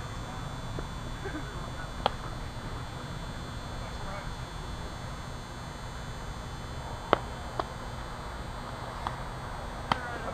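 Softball field ambience under a steady low rumble, with faint distant voices and a few sharp knocks; the loudest knock comes about seven seconds in, followed by a smaller one.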